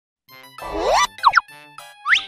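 Cartoon soundtrack music with sliding sound effects: one longer upward sweep about half a second in, then two quick rising chirps just after a second in.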